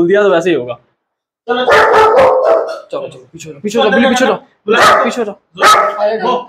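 A dog barking several times in short bouts, the first starting about a second and a half in.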